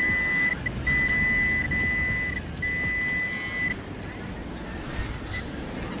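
Handheld pinpointer probe giving a steady high-pitched tone as it is held in a wet sand hole over a buried coin (a 20p piece). The tone breaks off briefly twice and stops a little under four seconds in.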